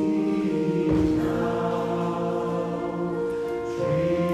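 Mixed choir of men and women singing long held chords in harmony, moving to a new chord about a second in.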